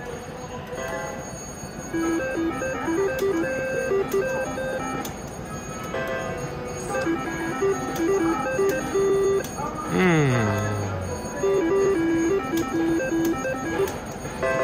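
Slot-machine electronic chimes and beeps: short tones in repeating little patterns, with a falling electronic glide about ten seconds in.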